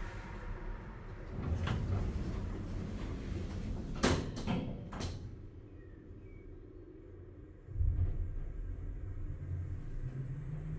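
Lift doors sliding shut on a hydraulic elevator, with three knocks as they close. A few seconds later the hydraulic drive starts with a sudden low hum as the car sets off.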